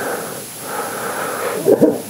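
Breathy human sounds without a clear pitch from someone in the congregation, ending in two short, sharp, louder sounds near the end.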